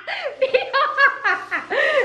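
A woman laughing, in several short peals whose pitch swoops up and down.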